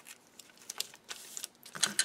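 Small ticks and light rustling of brown paper bag pieces being handled as clear tape is pressed down along a paper seam, with a brief papery rustle a little past the middle.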